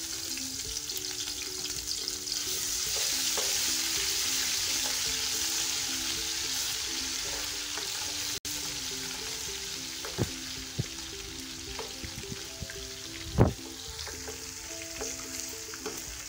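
Ginger-garlic paste sizzling in hot oil with browned onions in a metal pot as it is stirred with a slotted spoon. The sizzle is loudest in the first few seconds and then eases off. A few knocks of the spoon against the pot come in the second half, the loudest near the end.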